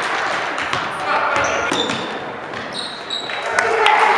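Gym noise during a youth basketball game: a basketball bouncing on a hardwood floor over a steady din of crowd and player voices, with a few brief high squeaks, the kind that sneakers make, in the middle.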